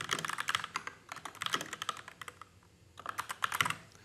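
Typing on a computer keyboard: rapid key clicks in three quick bursts separated by short pauses.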